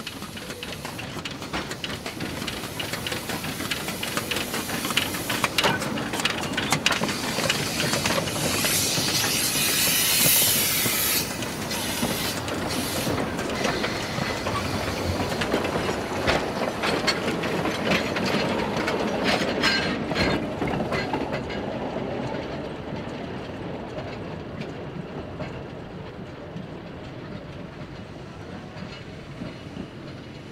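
Amemiya No. 21 narrow-gauge steam locomotive and its coaches running past, wheels clicking over the rail joints. A burst of steam hiss comes about nine to eleven seconds in. The sound builds over the first ten seconds and fades slowly over the last ten.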